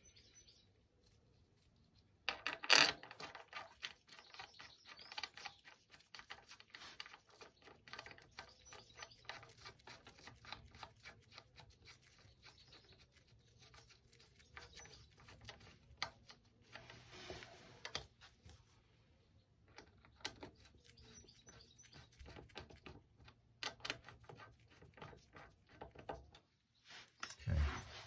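Light clicks and ticks of small metal parts being handled as grease is applied and the swingarm hub's pinch bolts are fitted loosely by hand, with one louder click about three seconds in.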